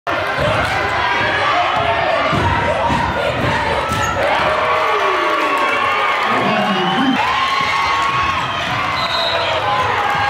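Live gym sound: a crowd of voices shouting and cheering, with a basketball bouncing on a hardwood court underneath.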